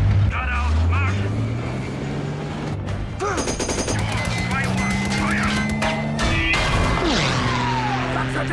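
Film soundtrack battle mix: machine-gun fire in rapid bursts, rounds striking and ricocheting off tank armour, over a score of sustained low notes. A falling whine comes near the end.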